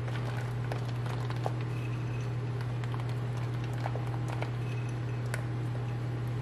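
Walnut pieces sprinkled by hand onto bread in a glass baking dish: a few faint, scattered ticks over a steady low hum.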